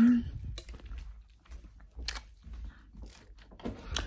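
Low rumbling handling noise from a handheld camera being carried about, with a few soft knocks and clicks, about two seconds in and again near the end.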